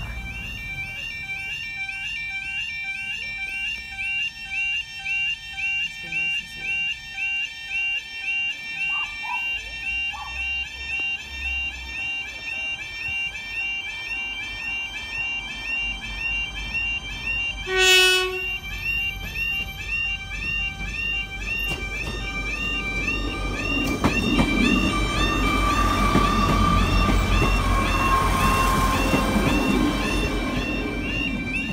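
Level crossing warning alarm warbling in a regular repeating cycle, joined just past halfway by one short blast of a train horn. In the last third a British Rail Class 158 diesel multiple unit approaches and runs over the crossing, its engine and wheel noise growing loud.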